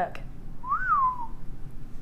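A person whistles once, a short note that glides up and then back down, a little under a second long, about halfway through.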